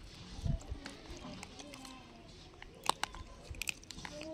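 Gray langurs chewing and crunching hard dry grains, with a few sharp cracks in the second half.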